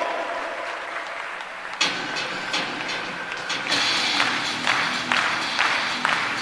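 Crowd applause in a large stadium, with PA music kicking in suddenly about two seconds in. The music has a steady beat of about two strokes a second, under continued clapping.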